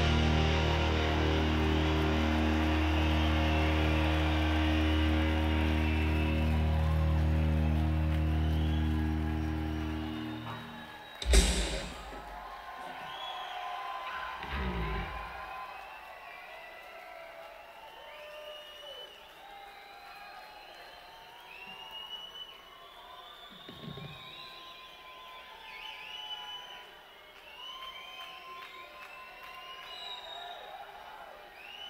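A live rock band holds a final low guitar chord for about ten seconds before it fades out, followed by one sharp loud hit. An arena crowd then cheers, shouts and whistles.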